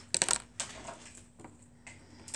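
Plastic highlighter markers being handled and set down, a quick clatter of sharp clicks followed by a few fainter single clicks.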